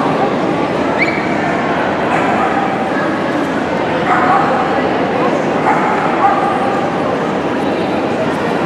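A dog giving a few short, high yips and whines over the steady chatter of a crowd in a large echoing hall.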